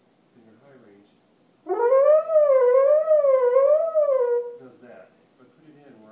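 French horn playing one sustained note, scooped up from below into it, with a slow, wide wavering of pitch up and down about three times before it stops near the end.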